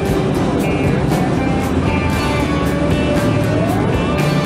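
Background music with a steady beat and a melody line.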